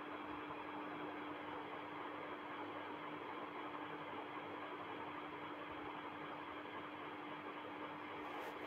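Steady background hiss with a constant low hum, unchanging throughout: the room and recording noise of a pause with no speech.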